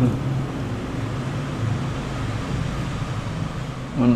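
Steady low hum over an even hiss of background noise, with no distinct events.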